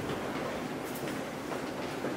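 Steady room noise in a large hall with a few faint clicks and knocks of small objects being handled on a bench, about a second in and again near the end.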